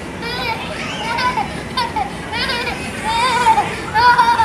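Young children's high voices calling out and squealing at play, in short overlapping cries about once a second, over a steady background din. The loudest cries come near the end.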